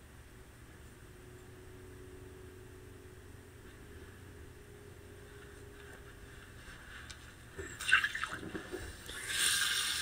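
Quiet room tone, then a few light knocks and handling sounds about eight seconds in; near the end the bathroom faucet is turned on and tap water starts running steadily into the sink.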